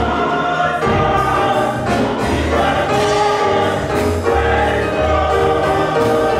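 Church choir singing a hymn in sustained, held notes, with instrumental accompaniment carrying low bass notes underneath.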